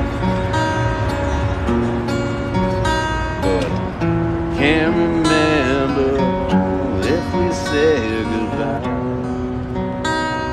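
Acoustic guitar strummed in a steady, mellow rhythm. A man's voice sings along in a couple of phrases around the middle.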